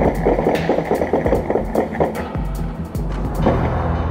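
A rapid, irregular volley of gunshots from several guns over a low, steady music drone. The shots thin out and stop about three and a half seconds in.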